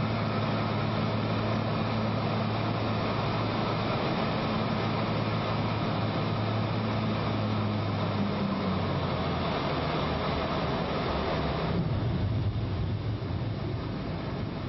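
Aircraft cabin noise heard from inside a plane flying low: a loud, even rush of air with a low, steady engine drone. The drone steps down in pitch about eight seconds in, and the higher rush thins out near the end.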